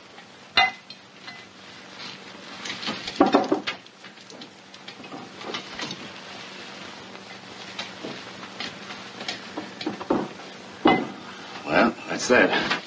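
Scattered clinks and knocks of glass bottles and packages being handled and set on shelves, the loudest about three seconds in and near the end, over the steady hiss of an old film soundtrack.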